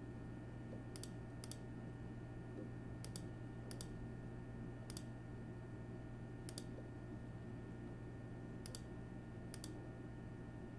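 Computer mouse clicking, about eight scattered clicks over ten seconds, some in quick pairs, over a steady low room hum.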